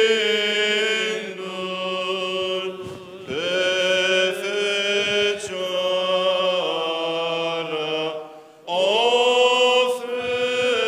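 Orthodox church chant: voices singing a slow melody in long held notes over a steady low drone, with short pauses for breath about three seconds in and again near the end.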